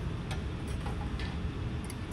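A few faint metallic clicks as steel glassblowing tools (jacks) are picked up off the steel bench and handled against the blowpipe, over a steady low hum of hot-shop equipment.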